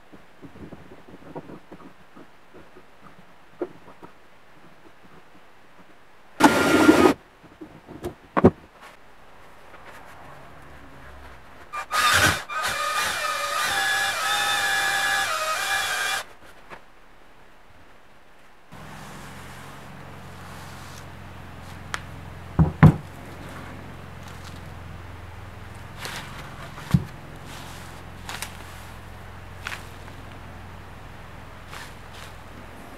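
A drill-driven stone cylinder hone working the bore of a machined aluminium cylinder, lubricated with isopropyl alcohol, to blend the two halves of the bore. There is a short burst about six seconds in, then a steady run with a whine of about four seconds from around twelve seconds. Light clicks and knocks from handling come before it, and a steady low hum with a few knocks follows in the second half.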